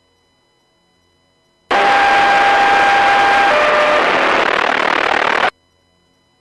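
Two-way radio breaking squelch on a noisy transmission: a loud burst of static hiss for about four seconds, starting and cutting off suddenly, with a steady tone that steps down in pitch about halfway through.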